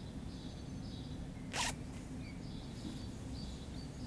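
Small birds chirping over and over in the background above a low steady room hum, with one short rasping noise about a second and a half in.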